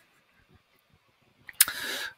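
Near silence, then near the end a sharp click followed by a short hiss of breath drawn in just before speaking.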